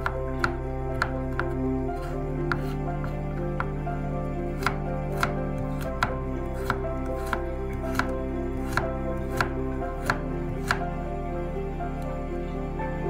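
Kitchen knife dicing carrot on a bamboo cutting board: sharp, regular knocks of the blade on the board, about two a second.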